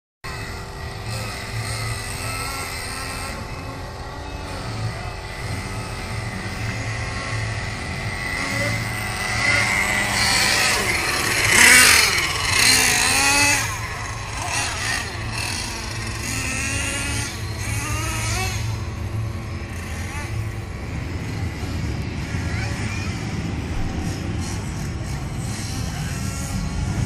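Small nitro glow engines of radio-controlled race cars revving up and down, a high whine that keeps rising and falling in pitch, loudest about halfway through as one passes close.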